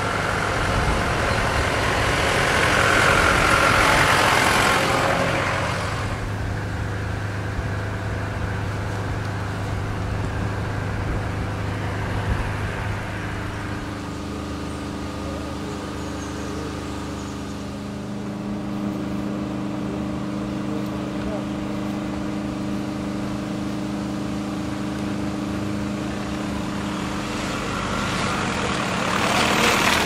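Diesel engine of a compact tracked excavator running steadily, its pitch shifting about halfway through as it works. A louder swell of broader noise comes a few seconds in and again near the end.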